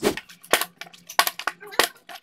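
Plastic water bottle knocking against a tabletop: four sharp knocks, roughly every half second.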